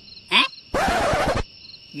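Insects chirping steadily in a high, unbroken drone at night. A brief voice sound comes near the start, then a loud, rough, hissing burst of under a second from one of the men.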